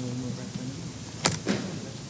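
Faint murmured talk, then a sharp knock a little over a second in, followed by a second, duller knock a quarter second later.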